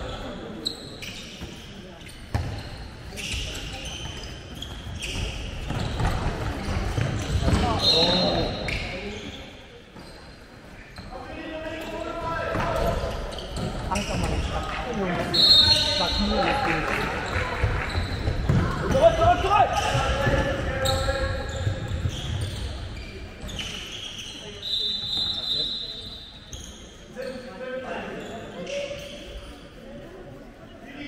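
Indoor handball play in a hall: the ball knocking repeatedly on the wooden court floor, a few short high squeaks of shoes on the floor, and players' voices calling, all with hall echo.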